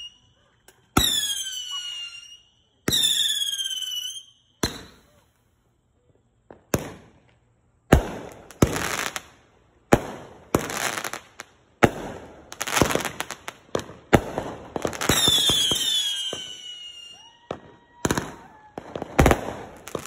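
A Black Cat 'Night Howler' 500 g firework cake firing about fifteen shots, one every second or two. The first few shots, and several near the end, carry whistles that fall in pitch, a howling tail. The shots in between pop and burst with a short crackling spray.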